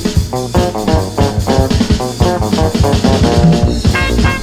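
Punk-rock band playing an instrumental passage: drum kit keeping a steady beat under bass and electric guitar, with no vocals.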